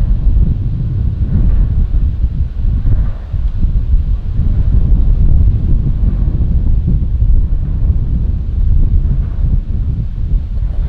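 Wind buffeting a shotgun microphone through its furry windscreen, loud and gusty, rising and falling.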